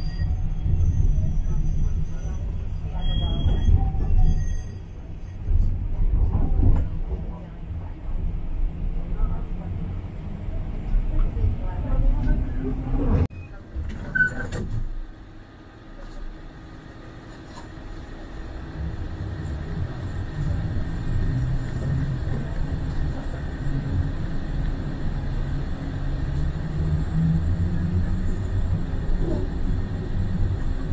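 Low rumble of a rail public-transport car heard from inside, with voices in the first half. The rumble cuts off suddenly about thirteen seconds in, then builds again steadily.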